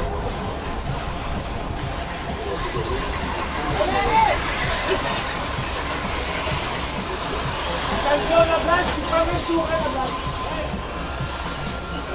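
Indistinct voices and music over a steady background noise, with short pitched fragments about four seconds in and again around eight to nine seconds.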